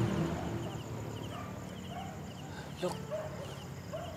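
Crickets chirping, short high trills repeating in small groups at an even pace, with a low hum fading out in the first half-second.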